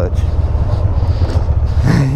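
Can-Am Spyder RT three-wheeler's Rotax V-twin engine running under way at low speed, a steady low rumble with wind and road noise over it.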